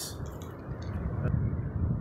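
Low, steady rumble of wind buffeting the microphone, with a single faint click about a second in.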